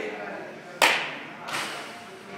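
A bat cracking against a baseball on a swing in a batting cage: one sharp, loud hit with a short ringing tail. A softer second knock follows under a second later.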